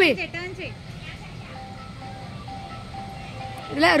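A simple electronic tune of held single notes plays from an amusement-park ride, steady and quieter than the voices. A high voice speaks briefly at the start and again near the end.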